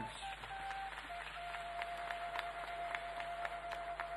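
Soft background music: a wind instrument holds one long steady note from about a second in, over hall noise with scattered faint clicks.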